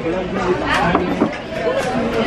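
Young people talking and chattering close by, with several voices overlapping.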